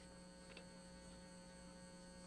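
Near silence with a faint, steady electrical hum in the background.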